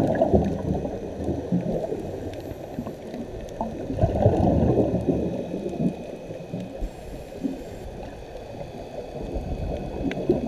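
Underwater scuba exhalation bubbles gurgling from a regulator, in surges about four to five seconds apart, with muffled water rumble between them and faint steady high tones.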